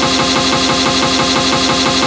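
Electronic breakbeat mix under a live stutter effect: the loop is chopped into a fast, even repetition many times a second, with the bass filtered out and steady sustained tones held over it.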